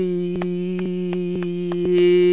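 A man's voice holding one long sung note in a worship chorus, with quick, evenly spaced hand claps over it.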